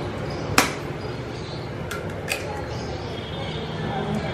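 A fork tapping an eggshell to crack an egg open over a plastic bowl: one sharp click about half a second in, then a couple of lighter clicks around two seconds, over a steady low hum.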